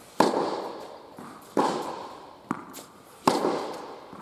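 Tennis ball struck hard by a racket in a rally: three loud, sharp hits about a second and a half apart, each trailing a long echo from the indoor hall, with a lighter tap of the ball between the second and third.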